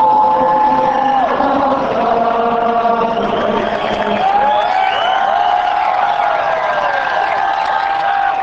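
A stadium crowd of fans singing the national anthem together, the pitch gliding between notes and settling into one long held note through the second half.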